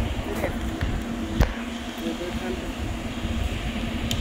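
Pipe-threading lathe running with a steady hum, and one sharp knock about one and a half seconds in.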